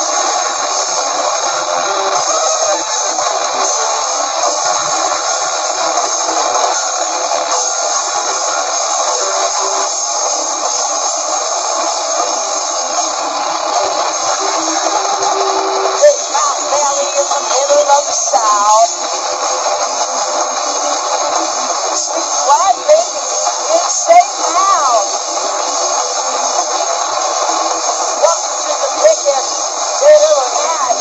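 Live noise-rock band playing: two electric guitars and drums in a dense, continuous wall of sound, thin-sounding with no low end. From about halfway, wavering sliding pitched tones come in over it.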